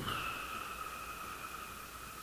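A steady high-pitched tone with a fainter tone an octave above it, held evenly and fading slightly.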